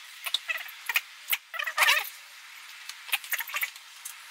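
A run of short, high-pitched squeaks and rubbing scrapes from gloved hands and a microfiber towel working against rubber and plastic engine parts around the fuel injectors. The loudest squeak falls near the middle.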